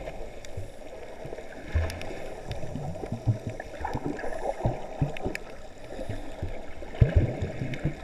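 Muffled underwater sound heard through a submerged camera: water swirling and gurgling around the housing, with irregular low knocks and a few thin clicks, and the loudest thump about seven seconds in.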